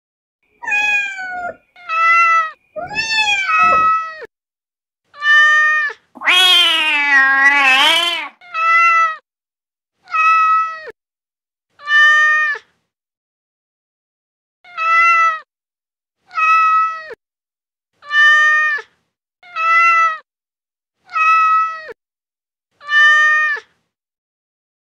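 Domestic cat meowing over and over. There are a few varied meows first, then one long, loud, drawn-out meow, then a string of about ten short, alike meows roughly every second and a half, with a longer gap near the middle of the string.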